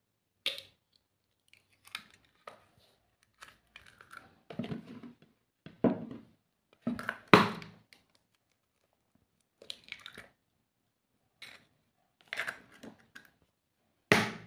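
Raw eggs being cracked by hand into a bowl: a scattering of short, sharp shell cracks and the crunch of shells being pulled apart, irregularly spaced, the loudest about seven seconds in.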